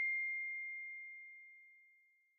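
The ringing tail of a single high chime in a logo sound ident: one pure, steady tone that was struck just before and fades away, dying out about one and a half seconds in.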